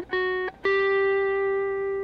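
Clean electric guitar, a Fender Stratocaster, picking single notes on the B string at the fifth, seventh and eighth frets (E, F sharp, G) of a G major (Ionian) scale pattern: a short note at the start, then the eighth-fret G picked about half a second in and left ringing.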